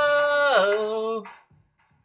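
A man singing unaccompanied, holding one long note that drops to a lower pitch about half a second in and breaks off after a little over a second.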